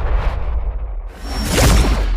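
Whoosh sound effects of an animated intro, noisy sweeps over a deep low rumble. The loudest sweep swells up near the end.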